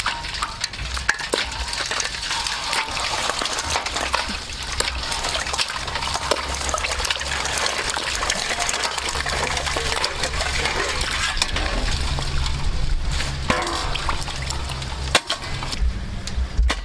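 Water splashing and pouring into a stainless steel basin as live crabs are rinsed and tipped from one basin into another, with scattered sharp clicks among the splashing.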